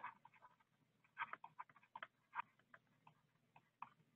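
Faint, irregular ticks of a stylus on a tablet screen as words are handwritten, over near silence.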